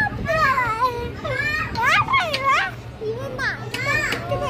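A small child's high-pitched voice squealing and babbling playfully, the pitch swooping steeply up and down, with a low steady hum underneath.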